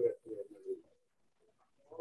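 A dove cooing: a short run of low coo notes in the first second.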